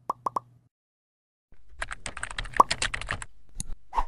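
Animated logo outro sound effect: three quick pops, about a second of silence, then a rapid run of clicks like typing as the text comes on screen, with two last clicks near the end.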